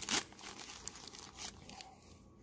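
Plastic trading-card pack wrapper crinkling as it is torn open. There is one louder crackle at the very start, then it fades to faint, scattered rustles.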